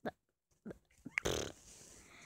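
A short rough, breathy noise from a child's mouth or nose about a second in, after a couple of faint clicks.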